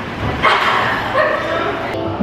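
A person's voice in short, high-pitched calls, in a room with echo.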